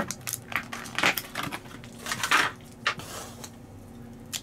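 Clear plastic blister packaging crackling and crinkling in the hands as it is pried open to free batteries, in a string of irregular crackles over a faint steady hum.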